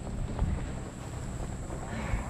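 Wind buffeting the camera's microphone, a low rumble, with a brief knock about half a second in.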